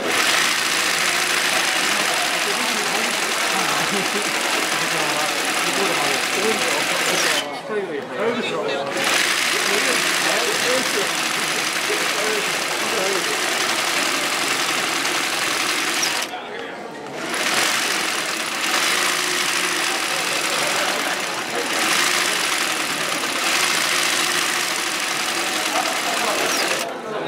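Sewing machine stitching yokofuri (side-swing zigzag) embroidery, running at a fast steady pace. It stops briefly twice, about 8 seconds in and again around 16 seconds, as the embroiderer pauses to reposition the hooped cloth.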